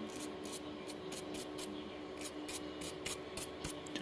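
A small brush scrubbing around the CPU socket of a server blade's motherboard, clearing away leftover thermal compound. It makes about a dozen quick, irregular bristly strokes over a faint steady hum.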